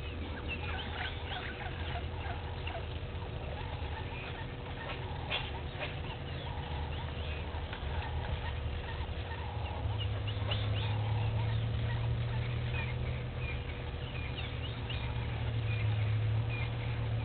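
Outdoor wildlife ambience: many short chirping calls from small wild animals, scattered throughout, over a low steady rumble that grows louder about ten seconds in.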